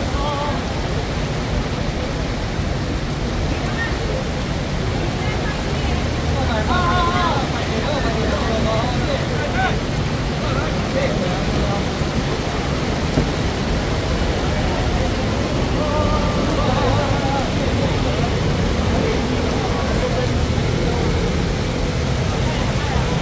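Heavy rain falling steadily on a street, with scooters passing and scattered voices from a crowd, more noticeable about seven and sixteen seconds in.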